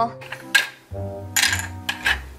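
A few light clacks of small plastic toy dishes and play food being set down on a plastic doll table, over soft background music.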